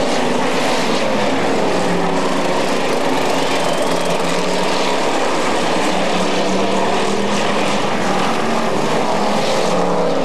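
Several street stock race cars running at racing speed, their engines a loud, steady pack sound with several engine notes rising and falling as the cars go through the turn.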